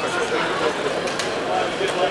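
Indistinct voices of people talking in the background, with a couple of faint clicks a little after a second in.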